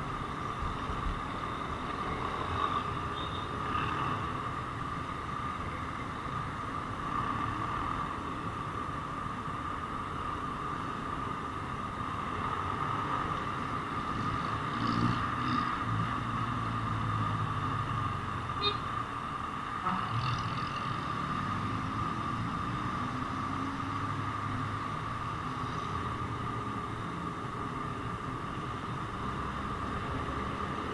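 Motorcycle running at riding speed in city traffic, heard from the handlebars as steady engine, road and wind noise with a steady high hum. Midway, a large neighbouring vehicle's engine grows louder for a few seconds.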